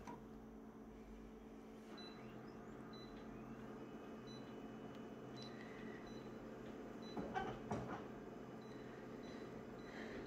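Konica Minolta bizhub C227 colour copier idling with a faint steady hum, while its touchscreen is pressed: a short beep about six seconds in and a few light clicks a second later.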